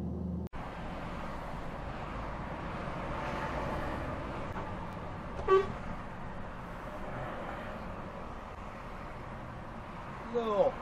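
Steady road and engine noise from a truck driving on a motorway, with one short, loud horn toot about five and a half seconds in.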